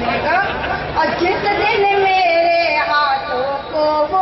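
A woman's voice reciting Urdu poetry in a sung, melodic style through a microphone and PA. She starts with a few quick syllables, then holds long, steady sung notes through the rest, with some audience murmur under it.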